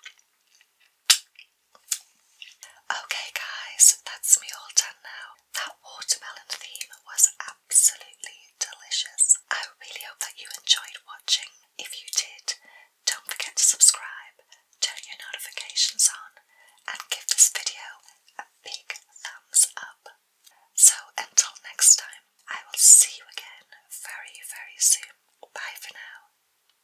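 A woman whispering close to the microphone, with a couple of sharp mouth clicks in the first two seconds.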